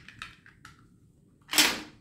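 A few faint clicks as a small plastic gate-opener unit is handled, then one short, loud burst of noise about one and a half seconds in.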